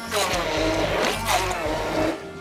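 Hand-held electric immersion blender running, puréeing chunks of banana in a stainless steel bowl.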